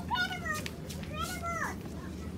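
Two short, high-pitched, meow-like vocal calls, each sliding down in pitch, over a steady low background hum.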